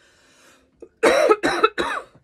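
A woman coughing three times in quick succession, starting about a second in.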